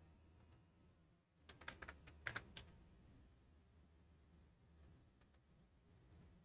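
Computer keyboard typing: a quick run of keystrokes about a second and a half in, then one faint click near the end, over a low steady hum.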